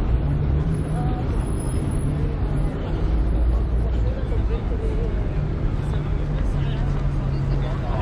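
Street ambience of a busy pedestrian promenade: indistinct chatter of passers-by over a steady low rumble.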